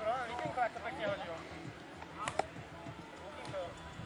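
Indistinct voices of players calling out across an open sports field, with a single sharp click about two seconds in.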